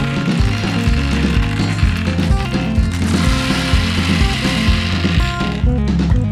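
Rattling, ratchet-like clatter of a plastic toy capsule being handled and gumballs knocking together, strongest from about halfway until just before the end, over background music with a steady beat.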